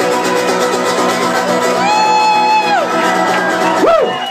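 Live acoustic guitar and accordion playing, with a long held vocal note about two seconds in that slides down as it ends. Near the end a single whoop rises out of the crowd as the song closes.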